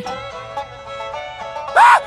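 Background music of plucked strings, then near the end a sudden loud yell from a man jolted awake, the first of a run of short cries.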